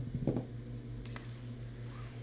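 A large die rolled onto a wooden tabletop: a few quick knocks as it lands and tumbles, then a single sharp tap about a second in.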